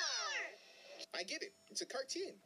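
High-pitched cartoon character voice from the animated clip: a long falling whine in the first half second, then short spoken bits.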